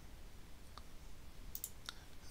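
Two faint computer mouse clicks, one a little under a second in and one near the end, over a low steady hum.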